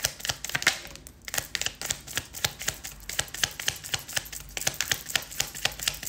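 Rapid, irregular clicking and tapping, several sharp clicks a second.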